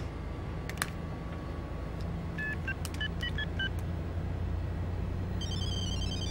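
A flip cell phone's electronic beeps: a quick run of short tones at changing pitches, then a fast high warbling trill near the end. Under them runs the steady low rumble of the tour bus's engine.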